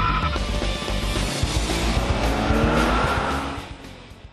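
Logo intro sting: music mixed with car sound effects, with a rising sweep through the middle, fading out near the end.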